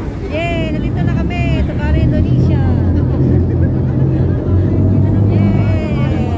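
Passenger ferry's engine rumbling low and steady as the boat moves through the water, growing louder about a second in, with passengers' voices over it.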